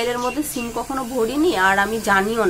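A woman talking, with a brief hissing consonant about half a second in.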